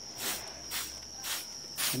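Hand sprayer giving short hissing squirts about twice a second as a mineral-oil and detergent solution is misted onto the plants' leaves against grasshoppers, over a steady high-pitched trill of night insects.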